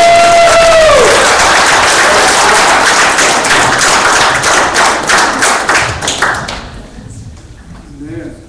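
A singer's last held note ends about a second in, followed by a congregation clapping; the applause dies away around six to seven seconds in.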